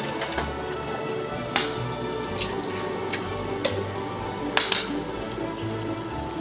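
Background music playing under three sharp taps of eggs being cracked on the rim of a stainless steel mixing bowl, the first about one and a half seconds in and the last near five seconds.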